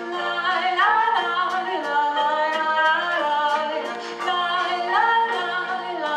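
A woman sings an Abruzzese folk song live into a microphone, holding long notes and sliding between pitches. She is backed by a drum kit and a double bass, with light, even drum strokes about twice a second.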